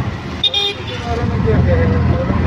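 Auto-rickshaw engine running as it drives, heard from inside the open cab, with a short horn toot about half a second in.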